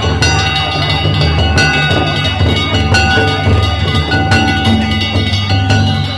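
Danjiri float's festival music (narimono): metal gongs and drums struck in a running rhythm, with sharp strikes about once a second over held ringing tones. It plays loudly over a steady low rumble.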